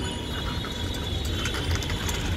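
Children's bicycle freewheel ticking in quick, irregular runs of clicks as the rider coasts, over a steady low rumble.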